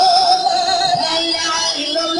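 A woman singing long held notes with a marked vibrato over a lower sustained accompanying line, in a live devotional song performance.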